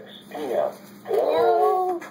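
A young boy's high-pitched voice calling out wordlessly: a short call, then from about a second in a longer, drawn-out call that bends in pitch.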